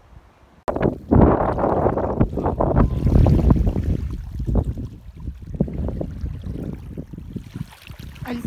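Wind buffeting the microphone in loud, uneven gusts, over small waves lapping at a pebbly shore. It starts abruptly about a second in, after a short quiet stretch.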